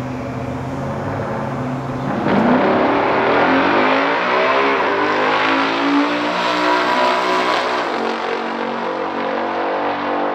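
Two big-block V8 drag cars, a Chevrolet Corvette L88 427 and a Dodge Coronet R/T 426 Hemi, both with three-speed automatics. They idle at the start line, then launch at full throttle about two seconds in, and the engine notes climb in pitch through the gears. The sound thins out near the end as the cars pull away down the track.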